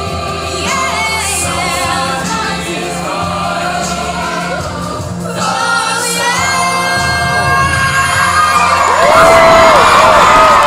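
Show choir singing with low accompaniment and holding long final notes. About nine seconds in, the audience breaks into loud cheering and whoops as the number ends.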